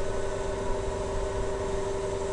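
Steady background hum and hiss with a few unchanging tones in it, the even noise floor of the narrator's recording setup between words.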